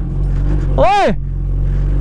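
Sport motorcycle engine running steadily at low revs, with a man's long shouted "oh" about a second in.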